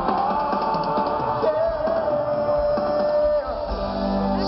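Live pop band music with singing, recorded from within an open-air festival crowd. A long held note runs through the middle.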